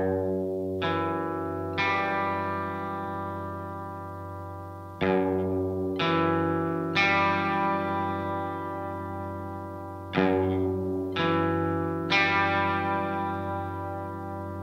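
Electric guitar with effects and some distortion playing ringing chords, struck in groups of three about a second apart and each left to ring and fade. The phrase repeats about every five seconds over a held low note.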